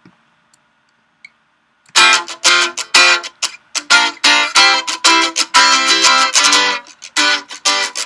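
A recorded guitar part from a multitrack backing track playing back in Ableton Live, one side of a stereo guitar recording now split to mono. After a short quiet with a click, it starts about two seconds in as guitar chords struck in a steady rhythm.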